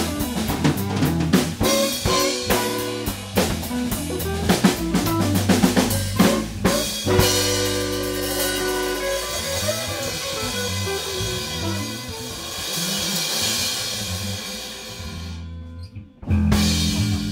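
Live band of drum kit, electric guitar, bass and saxophone playing, with busy drum hits for about the first seven seconds. Then a long held chord under a ringing cymbal wash that fades and stops just before the end, like the close of a tune.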